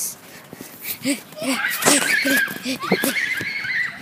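Children panting and laughing as they run, in short voice sounds about three a second, with a long high-pitched squeal in the second half. Knocks and rubbing come from a handheld tablet being jostled as it is carried at a run.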